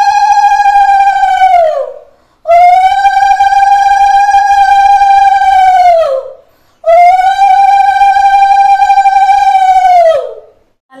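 Conch shell (shankha) blown in three long blasts, each holding a steady pitch and then sagging down in pitch as the breath runs out. It is sounded as part of the worship.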